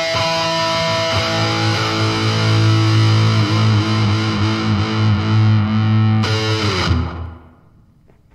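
Distorted electric guitar solo over a held low note. About six seconds in a last chord is struck, rings briefly and dies away as the music ends.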